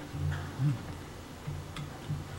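A low hum-like sound in short stretches over the room tone of a lecture hall, with a faint click near the end.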